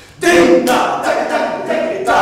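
Three men's voices chanting rhythmic phrases together, shouted sharply, starting a moment in after a brief lull.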